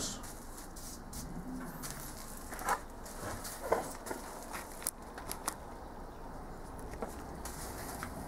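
Quiet workshop background with a steady low hum and a few scattered light clicks and taps.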